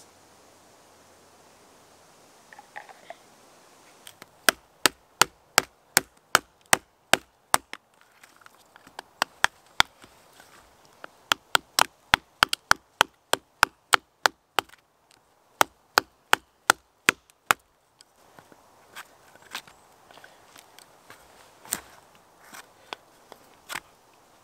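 A knife blade chopping into a dry stick of wood resting on a log: sharp knocks about three a second, in several runs with short pauses, then softer, scattered knocks for the last few seconds.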